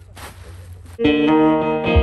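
A brief rustle of packing, then a cigar box guitar (a Rusty Taylor Second Hand Smoke guitar) starting suddenly about halfway through, played through its pickup with plucked notes ringing. A low thump from a foot stomp board comes near the end.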